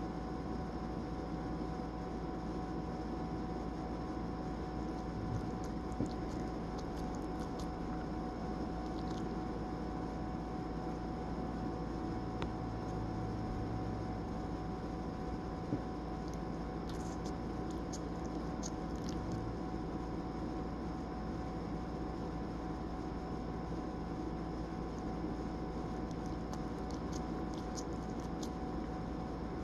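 Steady room hum and hiss, with three short clusters of faint clicks from a sleeping dog's mouth smacking, as if chewing.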